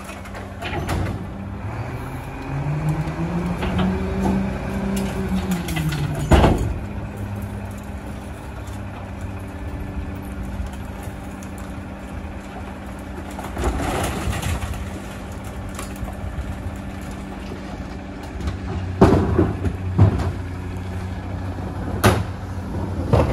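Mack rear-loading garbage truck's diesel engine runs steadily, revs up and settles back over a few seconds as the packer runs, ending in a loud metal clank about six seconds in. Later, plastic recycling carts knock against the hopper as they are tipped in, with a couple more bangs near the end.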